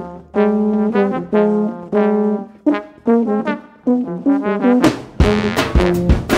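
Jazz brass trio playing: trombone-led phrases of held notes, each lasting about half a second to a second. Sharp drum or cymbal hits come in near the end.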